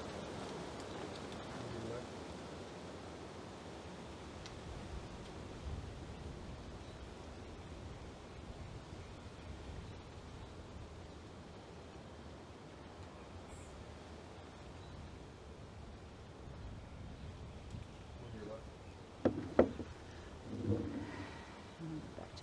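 Faint, steady outdoor background hiss. Near the end come two sharp knocks.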